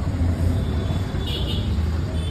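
Steady low rumble of nearby road traffic, with a brief rattle a little past the middle as a spice shaker is shaken over the sandwiches.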